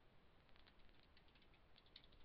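Near silence, with faint scattered clicks of computer keyboard keys being typed.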